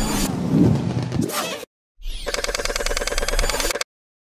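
Electronic outro sound effects: a sweeping whoosh with gliding tones for about the first second and a half, then, after a brief gap, a sustained, rapidly pulsing electronic chord that cuts off suddenly just before the end.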